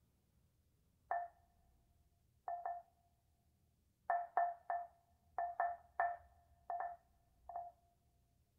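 Pieces of wood struck with a pair of mallets: about eleven short, pitched knocks, each ringing briefly, played singly and in quick pairs in an irregular rhythm.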